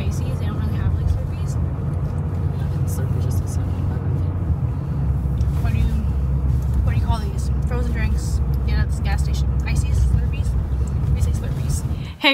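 Steady low road rumble inside a moving car's cabin, with faint snatches of quiet talk over it.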